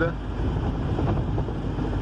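Steady low rumble of a vehicle's engine and road noise, heard from inside the cabin while driving.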